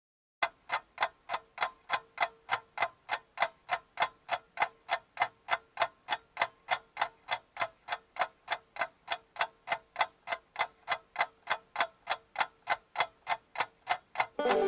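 Steady clock-like ticking, about three ticks a second, starting about half a second in, with a faint steady tone under the first half.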